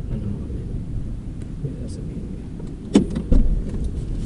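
Car door opening: a sharp latch click about three seconds in, then a second knock a moment later, over a steady low rumble.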